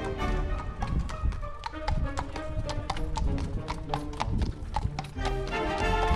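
Horse's hooves clip-clopping at a trot on an asphalt road as a horse-drawn carriage passes close by, about four to five sharp strikes a second, over background music.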